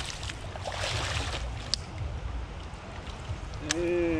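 Hooked bass thrashing and splashing at the water's surface, strongest in the first second and a half, over a steady low rush of river water. Two sharp ticks come through, one near the middle and one near the end.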